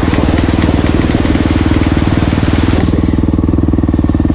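Dirt bike engine idling steadily, with an even low pulsing beat.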